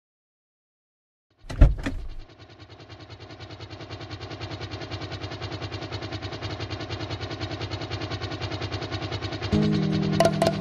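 A car engine starts suddenly with two sharp knocks about a second and a half in, then runs with a fast, even pulse that slowly grows louder. Music with a bass line comes in just before the end.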